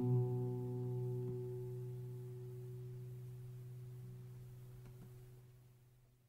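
A guitar's final chord ringing out after the last strum of the song and slowly fading away, dying to silence at the very end.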